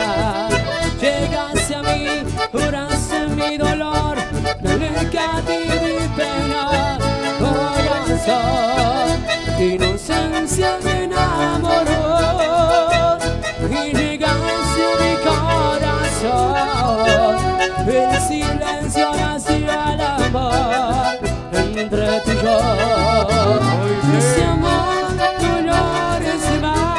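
Live chamamé band playing an instrumental passage, with accordion and bandoneón carrying the melody over acoustic and electric guitar on a steady beat.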